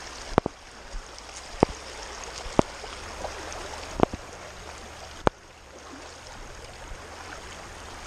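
Shallow creek water running over rocks, with a sharp knock about once a second from the footsteps of someone wading in rubber boots. The knocks stop a little past halfway, and the water sound dips briefly after the last one.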